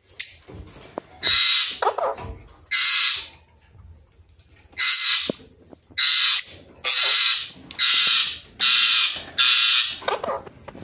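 A parrot giving a series of about eight loud, harsh screeches, each about half a second long, coming faster in the second half.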